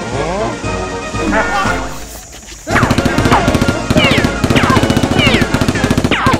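Rapid automatic-gunfire sound effect for a Nerf blaster, starting about two and a half seconds in as a fast string of sharp shots with falling whistling ricochets, over background music.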